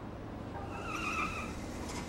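City street traffic with a steady low rumble of passing cars, and a brief high wavering squeal from a car, about a second long, in the middle.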